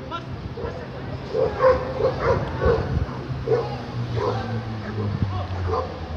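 Dogs barking repeatedly, short barks coming in quick runs with brief pauses, over a steady low hum.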